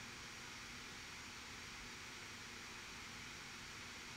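Faint steady hiss with a low hum underneath: the room tone and noise floor of the recording microphone, with nothing else happening.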